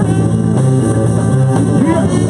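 Live funk-rock band playing loudly: electric guitar, bass guitar and drum kit under a trumpet line.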